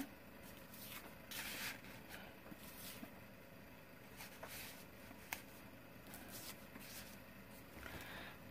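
Faint rustling of paper pages and cardstock tags being handled and leafed through, in soft scattered swishes, with one short sharp click about five seconds in.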